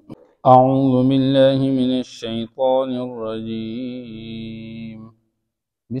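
A man reciting the Quran in Arabic in a slow melodic chant (tilawat), with long drawn-out notes. It starts about half a second in, breaks briefly near two seconds, and the last phrase fades out about a second before the end.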